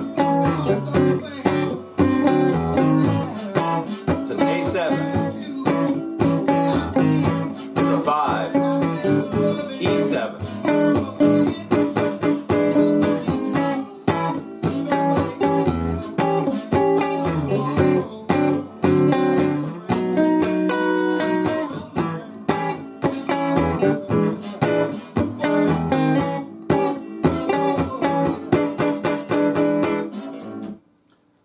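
Electric guitar strumming a blues chord progression in A (A, B, D7, E7) along with a blues record, with the record's band audible underneath.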